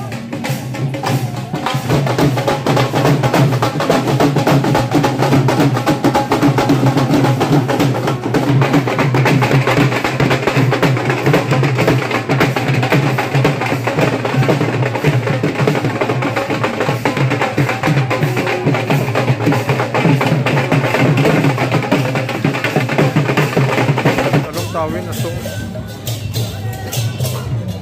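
Loud drum-led music with steady rhythmic percussion. It gets fuller about nine seconds in and drops back a second or two before the end.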